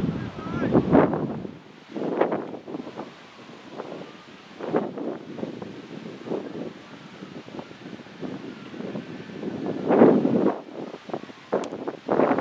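Wind buffeting the microphone in irregular gusts, strongest about a second in and again about ten seconds in, with faint distant voices and a single sharp click near the end.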